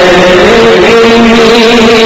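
Many voices chanting together on a long held note, a loud, steady drone.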